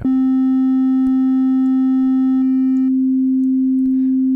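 Steady sine-wave test tone from Ableton Live, held at the edge of clipping. For the first three seconds or so a faint distorted edge of added overtones rides on it, then they drop out and the clean pure tone carries on alone.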